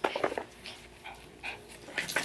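Small pet dogs panting close by, with a short burst of sound in the first half second and then a few faint breaths.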